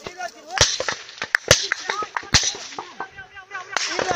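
Gunfire: a handful of sharp, irregularly spaced cracks, the loudest about half a second, one and a half, and two and a half seconds in.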